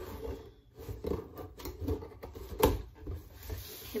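Scissors scraping and cutting through the packing tape and cardboard of a box, with cardboard flaps rubbing, in uneven strokes and a sharp knock about two and a half seconds in.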